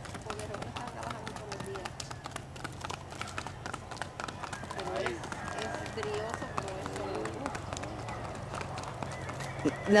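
Paso Fino stallion's hooves striking a snowy road in rapid, uneven footfalls as it prances under a rider, with faint voices in the background.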